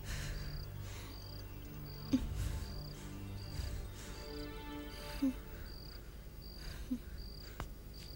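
A cricket chirping steadily, one short high chirp about every three-quarters of a second, over faint background music, with a few brief low blips.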